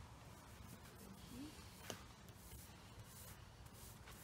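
Near silence with faint rubbing strokes of a small paint roller and brush laying paint onto a fiberglass trailer panel, and one sharp click about two seconds in.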